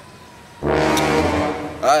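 A low, horn-like sound effect: one held note of about a second, starting about half a second in, with a rough, noisy edge.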